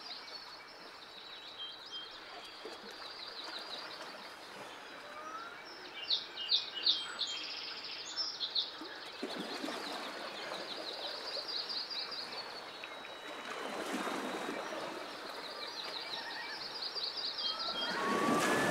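Birds singing outdoors: repeated high, rapid trills and a cluster of sharp chirps about six to eight seconds in, over a steady background wash of outdoor noise.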